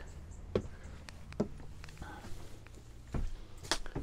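Footsteps climbing into a motorhome over its step and onto the floor: a few separate, irregular knocks over a faint low hum.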